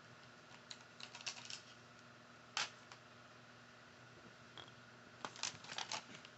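Sharp clicks and taps from thumbs working a small handheld device: a quick cluster about a second in, one louder single click midway, and another cluster near the end.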